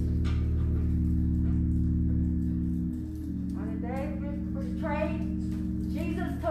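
Organ holding sustained chords that change about halfway through, with a voice starting over it in the second half.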